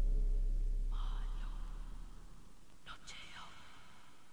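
A deep bass drone fades out over about two seconds at the end of an electronic track. Faint whispered voice samples come in about a second in and again near the three-second mark.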